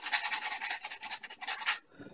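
80-grit sandpaper rubbed by hand over a wooden knife handle in quick back-and-forth strokes, a rapid scratchy rasping that stops shortly before the end.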